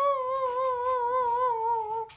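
A woman's long, wavering wail, muffled behind the hands over her face, held on one note that slowly sinks in pitch and breaks off at the end.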